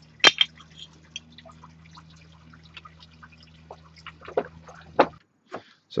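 Cut brick slabs being handled and stacked: a few sharp clay-on-clay knocks, one near the start and one about five seconds in, with small scattered ticks between, over a low steady hum that cuts off suddenly just after five seconds.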